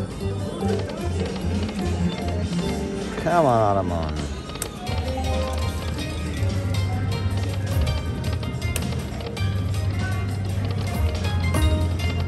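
Aristocrat Dragon Link 'Autumn Moon' slot machine spinning its reels, its jingles and effects playing over casino-floor music and background voices. A falling swooping tone comes about three seconds in.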